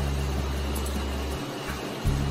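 A steady low hum under faint room noise, dropping out briefly about one and a half seconds in.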